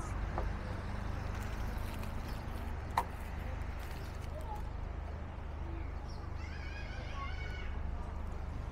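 Outdoor street ambience: a steady low rumble of distant traffic, with one sharp click about three seconds in and a brief, faint higher-pitched call near the end.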